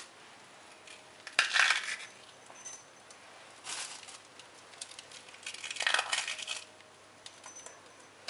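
A plastic bag crinkling as macaron halves are taken out, and the macarons being crushed by hand into small porcelain cups. Three short bursts of rustling and crackling.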